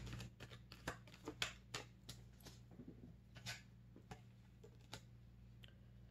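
Faint, irregular clicks and taps of tarot cards being handled, a few a second at first and sparser after about three seconds.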